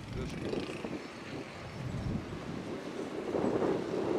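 Outdoor background noise with wind on the microphone and faint, indistinct voices that grow a little louder toward the end.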